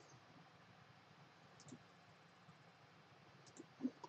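Near silence with a few faint, short clicks, one a little before halfway and a couple near the end.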